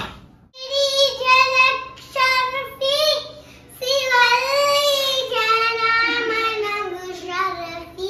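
A child singing without accompaniment in a high voice, holding long notes. The singing starts about half a second in, pauses briefly twice, then runs into a long phrase that slowly sinks in pitch.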